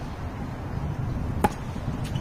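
A single sharp pock of a tennis ball impact about one and a half seconds in, over a steady low outdoor rumble.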